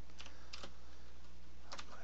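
A few separate keystrokes on a computer keyboard, spaced out as a command is typed into a terminal, over a steady low hum.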